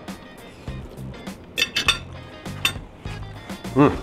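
Metal cutlery clinking against a ceramic plate a few times over background music, followed near the end by a man's approving 'hmm' while chewing.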